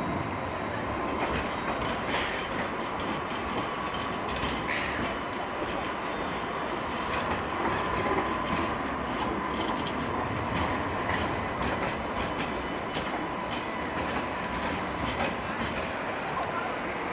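Light rail trams running along street track: a steady rumble of steel wheels on rail with a faint thin whine and scattered light clicks.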